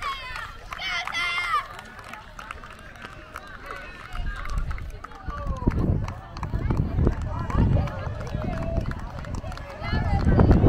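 Spectators' voices calling out and chattering across an open field, loudest in the first second or so. A low rumble on the recording comes in about four seconds in.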